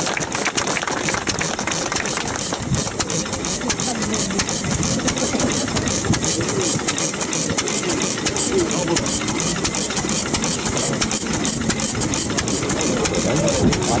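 Vintage Japanese single-cylinder stationary engine running with a steady, even beat of firing strokes, with crowd voices.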